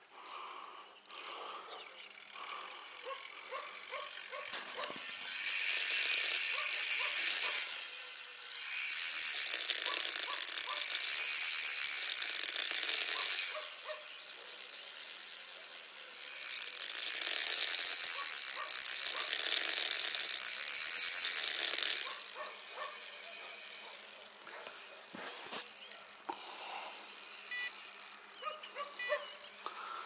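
Spinning reel's drag ratcheting in three long runs of a few seconds each as a hooked fish pulls line off, with quieter reel clicking between the runs.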